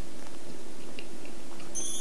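A man chewing a bite of cloud egg, faint little mouth sounds over a steady hum. Near the end a high, shimmering twinkle sound effect comes in.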